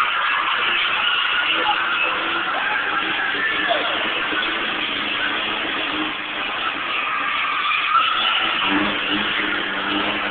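Car engines revving as cars slide around a paved arena, with tyre noise, over the steady chatter of a crowd of spectators.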